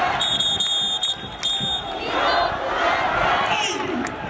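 A baseball crowd chanting a cheer together in the stands. A high, steady, whistle-like tone sounds twice in the first two seconds.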